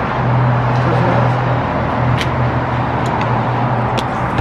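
Steady street traffic noise with a constant low engine-like hum, and a couple of faint clicks a little after two and three seconds in.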